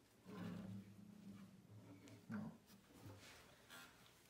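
A man's quiet voice: a long, drawn-out hesitant 'um' at the start and a short 'well' about halfway through, with near silence between.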